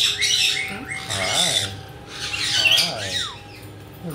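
Caiques squawking and chattering in short shrill bursts, about three of them, with a brief falling whistle about three seconds in.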